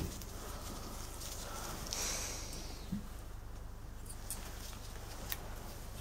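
Quiet handling sounds as a feeler gauge set is looked through for the next blade: a brief rustle about two seconds in and a few light clicks, over a steady low hum.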